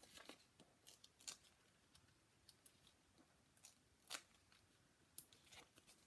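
Faint, scattered rustles and small clicks of paper and cardstock pieces being handled on a tabletop, a few seconds apart, the clearest about four seconds in and twice more near the end.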